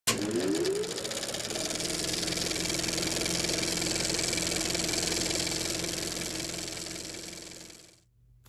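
Channel-logo intro sound effect: a rising sweep in the first second, then a steady mechanical buzz with hiss that fades out near the end.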